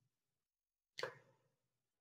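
Near silence, broken once about a second in by a single short click that fades quickly.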